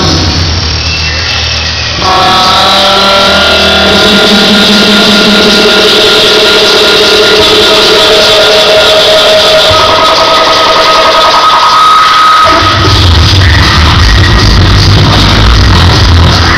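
Human beatbox live-looping performance through a club PA: layered, effects-processed vocal sounds making sustained electronic-style tones. A heavy bass line comes in about twelve seconds in.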